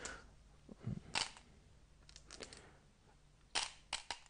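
Go stones clicking faintly as they are picked off the board and dropped back into the bowl: a few scattered light clicks, with a small cluster in the middle and two more near the end.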